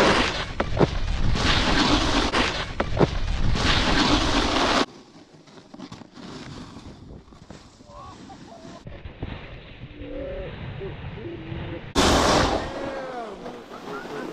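Snowboard sliding over packed snow and a terrain-park tube feature, under loud wind rush on the microphone, with a few sharp knocks in the first seconds. It then cuts off abruptly to a much quieter stretch with faint distant voices. Near the end there is another short loud rush of noise.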